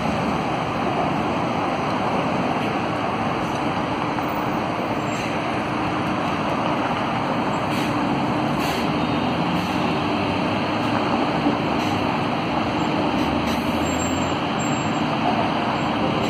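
Steady city road traffic noise as a battery-electric bus drives past close by, with a faint steady hum through the middle.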